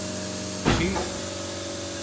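A steady mechanical hum made of several fixed tones, with a hiss over it, running unchanged. One short spoken word cuts in less than a second in.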